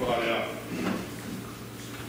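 A man's voice reading aloud: a short phrase at the start and a few more syllables about a second in, then a pause. A steady low hum runs underneath.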